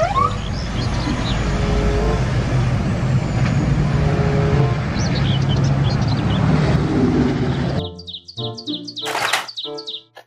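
Highway traffic: a steady low rumble of trucks on the road, with background music and chirping sounds laid over it. About eight seconds in the traffic noise cuts off and children's music carries on, with a short burst of hiss about a second later.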